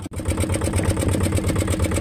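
Fishing boat's engine running steadily with a rapid, even pulsing beat, cutting in after a brief gap.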